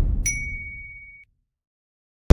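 End-card sound effect: a deep whoosh fading away, with a single bright ding about a quarter second in that rings for about a second.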